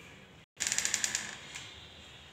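A short burst of rapid clicking, about fifteen quick clicks a second for roughly half a second, then fading out. It follows a brief total dropout in the sound.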